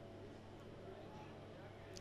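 Near silence: faint background noise with a steady low hum.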